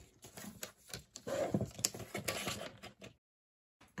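Creative Craft Products paper trimmer trimming a tab off a piece of card, with clicks and taps as the card is set against the rail and a scraping stretch as the blade is drawn along it. The sound cuts out for about half a second near the end.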